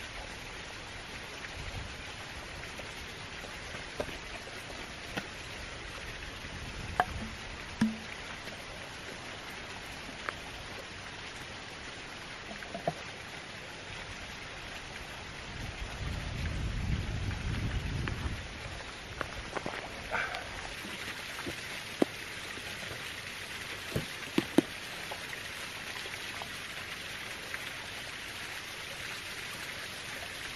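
Steady rush of a small waterfall, with sharp clicks and crackles from a plastic bottle and a soft water bag as water is squeezed through a filter into the bottle. A louder low rumble comes and goes in the middle.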